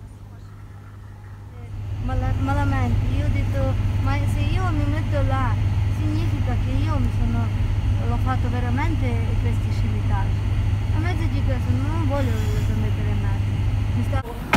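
Car cabin noise while driving on an unpaved road: a steady low rumble of engine and tyres that comes in loudly about two seconds in, with voices talking over it.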